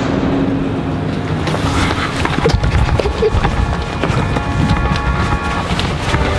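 Background music with held notes, over a run of footsteps on a hard floor.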